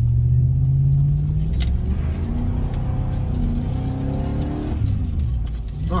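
Car engine accelerating hard to merge into traffic, heard from inside the cabin. The engine note climbs, drops about a second and a half in, climbs again and falls away near the end.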